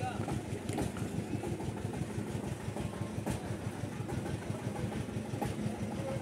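Engine idling steadily, with a rapid, even putter.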